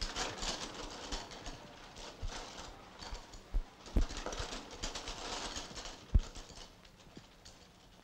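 Footsteps on a hard floor amid light clicking and rattling, with two heavier knocks about four and six seconds in.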